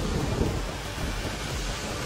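Steady wind rush buffeting the microphone of a motorcycle-mounted camera at road speed, with a low rumble from the motorcycles around it.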